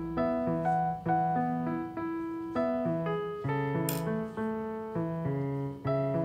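Background music played on a piano or electric keyboard: a gentle melody of single held notes over a bass line, a new note about every half second. A short sharp click sounds once, about four seconds in.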